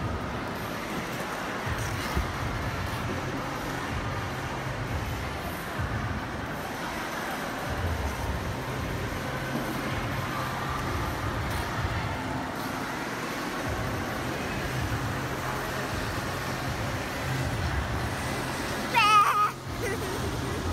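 Busy indoor ice rink: a steady noisy din with an uneven low rumble. Near the end a child gives a short, shrill, wavering scream, the loudest sound.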